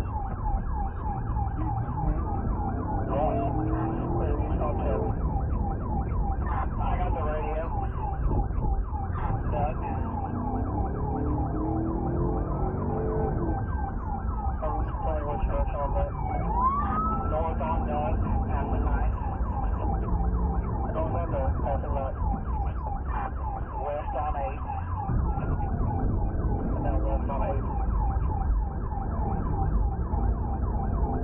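Police car siren sounding in a fast repeating yelp throughout, with occasional slower rising-and-falling sweeps. Under it runs a steady rumble of engine and road noise.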